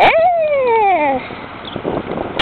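Pit bull mix dog giving one drawn-out whine: a sharp rise in pitch, then a long smooth fall lasting a little over a second.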